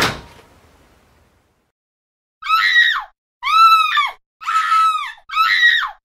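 A sharp bang at the very start with a short fading tail, then after a pause four shrill screams in a row, each rising and then falling in pitch.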